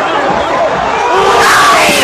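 Large football stadium crowd shouting and cheering together, many voices at once, loud and sustained.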